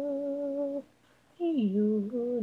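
Solo female voice singing unaccompanied, with no instruments: a held note that stops a little under a second in, a short pause, then a new phrase starting with a downward slide in pitch.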